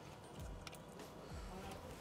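Quiet, with a few faint, scattered light clicks from a small socket wrench being worked on an 8 mm bolt securing an outboard's engine control unit.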